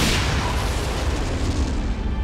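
Anime battle sound effect of an electric attack striking: a sudden explosive blast, followed by a noisy rumble that dies away over about two seconds.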